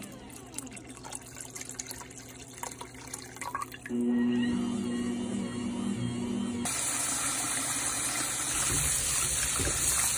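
Kitchen tap running into a metal bowl of vegetables being rinsed by hand in the sink, starting suddenly about two-thirds of the way in as a steady rush of water. Before it, a steady low hum.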